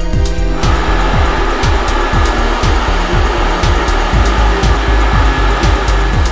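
Background electronic music with a steady beat. About half a second in, a Formech 686 vacuum forming machine starts a loud, steady rush of air, as from its vacuum and air system running.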